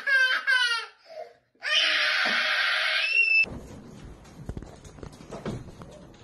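A young boy crying with a wavering voice, then a loud, harsh scream lasting nearly two seconds that breaks off abruptly a little over three seconds in. Only faint room noise with a few small knocks follows.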